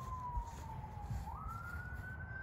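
A siren wailing: one tone falling slowly, then sweeping back up about two-thirds of the way through, over a low background rumble.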